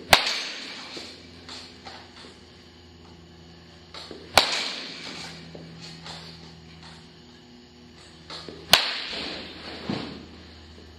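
A baseball bat hitting a ball three times, about four seconds apart, each a sharp crack that trails off over about a second.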